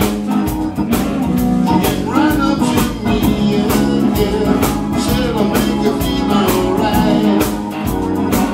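Live blues-rock band playing: electric guitar over bass, keyboard and a steady drum beat.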